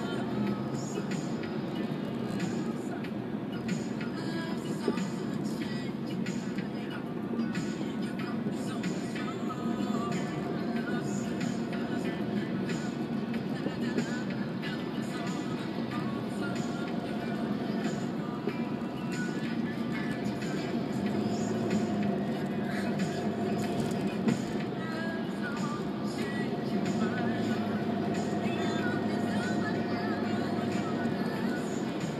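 FM radio music playing in a moving car's cabin, over steady road and engine noise.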